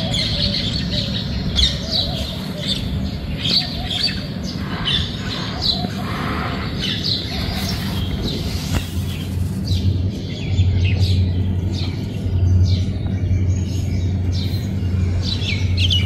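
Many small birds chirping in quick, short calls, over a steady low hum that grows louder about ten seconds in.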